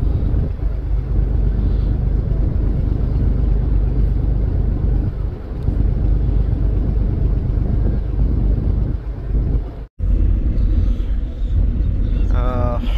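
Steady low rumble of a river passenger launch under way: engine drone mixed with wind and water rushing along the hull. The sound breaks off for an instant about ten seconds in, then carries on as before.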